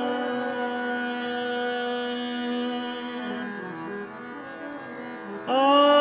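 Hindustani classical vocal music: the male voice pauses, leaving the tanpura drone and a harmonium holding notes, then moving through a short stepped phrase. The voice comes back in on a loud held note about five and a half seconds in.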